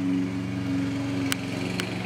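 An engine running steadily at a constant speed, a droning hum. Two short clicks come near the end.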